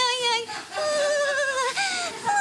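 A woman's high, wavering wordless vocalising in long held notes, breaking off twice into new notes.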